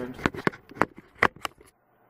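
About half a dozen sharp, light clicks and rattles over a second and a half: test leads, wires and small parts being handled on a cluttered electronics bench while someone rummages for alligator clip leads.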